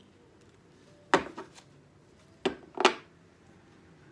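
Sharp taps of a tarot card deck against a wooden tabletop. There is one tap about a second in, followed by a couple of lighter ones, then two more close together near the three-second mark.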